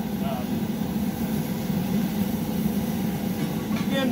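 A glass furnace's gas burner running with a steady low roar.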